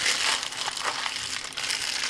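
A plastic mailer bag crinkling and crackling as it is handled in the hands.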